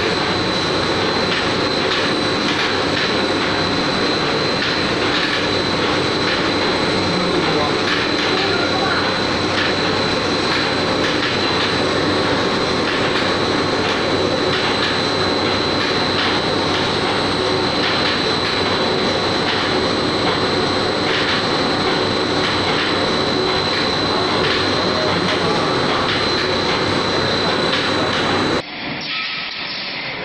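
Plastic extrusion line running: a steady loud machine noise with a high, even whine over it. Near the end it changes abruptly to a quieter, duller machine hum.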